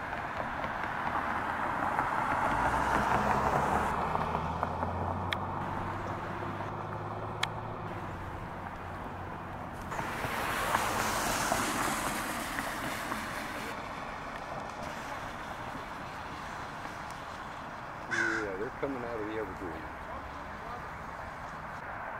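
Crows cawing while picking up peanuts, with cars going by on the street, the passing noise swelling about two seconds in and again around ten seconds in.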